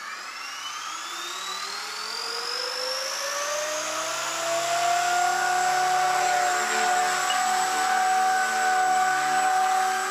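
Blade 180 CFX RC helicopter's electric motor and rotor spooling up: a whine that rises in pitch and grows louder over the first four or five seconds, then holds steady at flying headspeed.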